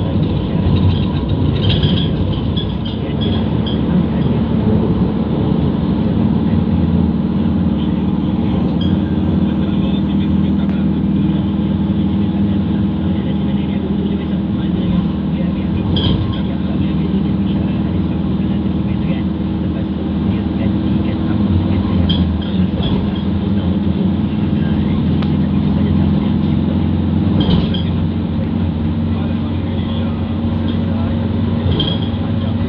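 Steady engine and road drone heard inside a car cruising at a constant speed on a highway, with a few light clicks now and then.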